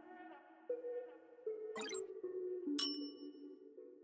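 Soft background music with sustained synth chords, with a subscribe-button animation sound effect laid over it: a short click-like burst about two seconds in, then a bright bell ding about a second later that rings out briefly and is the loudest sound.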